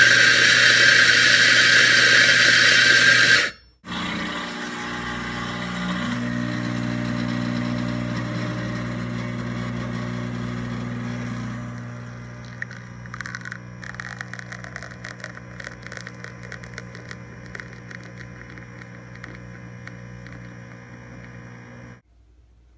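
Electric coffee grinder running loudly, cutting off suddenly after about three and a half seconds. Then an espresso machine's pump hums steadily as a shot is pulled into the cup, turning quieter with a light crackling from about twelve seconds in.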